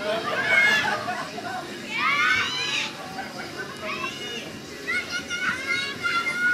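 Children shouting and calling out, with several high-pitched calls that rise and fall, over a steady background of chatter.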